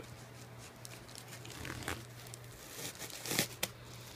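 Plastic wrapping and packing tape crinkling and tearing as a parcel is pulled open by hand: scattered rustles, with the loudest crackle near the end.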